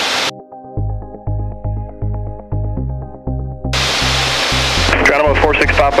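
Background music with a bass line stepping from note to note and short, clipped notes above it. The aircraft's in-flight cabin drone cuts out abruptly just after the start, leaving the music alone, and comes back about 3.7 seconds in under the music.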